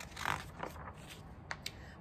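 A picture book's page being turned: a short papery swish, with a fainter one just after it. Two faint sharp clicks follow, about a second and a half in.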